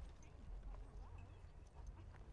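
Faint outdoor background sound with a low rumble and a few faint, indistinct sounds over it.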